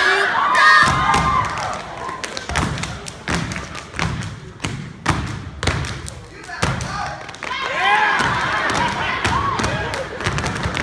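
Step team stomping boots on a wooden stage and clapping: a run of sharp, uneven stomps and claps. Audience shouts and whoops rise over them in the first second and again from about seven seconds in.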